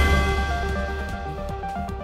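News-channel theme music: an electronic ident sting with a heavy bass and a repeating run of notes, growing steadily quieter.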